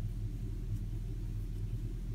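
Steady low background hum or rumble with no distinct events.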